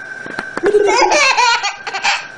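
A baby laughing in a quick run of short, high-pitched bursts, starting about half a second in and lasting about a second.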